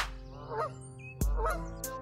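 Canada goose honking, two calls about a second apart, alarmed by the approaching kayak.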